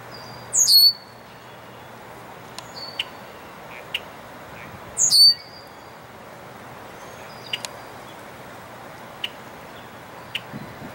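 Male red-winged blackbird giving its whistle: two loud, short, high whistles sliding down in pitch, about four and a half seconds apart. Softer short whistles and sharp clicks come between them.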